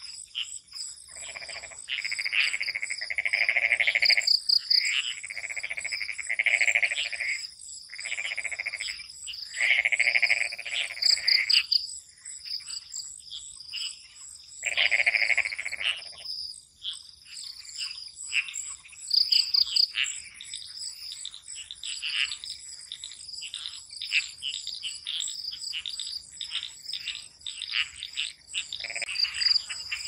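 A chorus of frogs calling in repeated pulsed bursts over a steady, high-pitched trilling of crickets. The frog calls come in loud clusters through the first half and thin out to fainter, scattered calls after about sixteen seconds.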